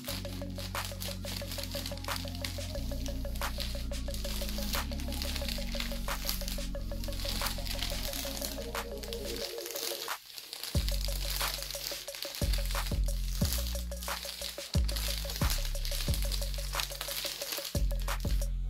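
Background music with a deep, sustained bass line that changes note every second or two; it drops out briefly about ten seconds in and comes back with a beat of heavy bass kicks.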